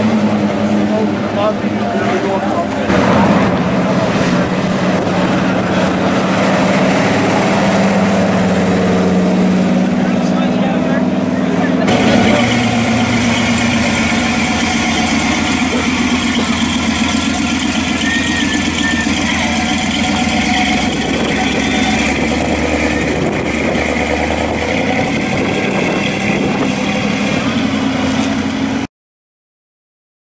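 Engines of classic cars running as they cruise slowly past at low revs, first a 1957-style Chevrolet hardtop, then after a cut about twelve seconds in, a hot rod coupe. The sound cuts off suddenly about a second before the end.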